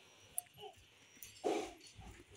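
Faint short animal calls: a couple of small squeaks around half a second in, then a brief rough call about a second and a half in.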